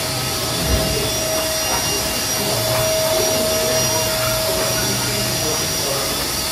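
Canister vacuum cleaner running steadily as its floor head is pushed over a rug, with a steady whine over the rush of suction. A soft knock just under a second in.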